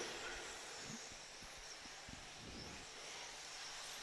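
Faint, steady background hiss with no distinct event: the low-level noise of the commentary feed between remarks.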